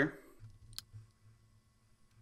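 A single computer mouse click, about a second in, against a faint low hum.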